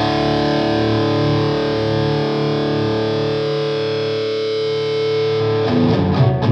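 Distorted electric guitar played through a modified Marshall JMP 2203 valve head and Marshall cabinet: one chord held and sustaining for about five seconds, then new chords picked near the end.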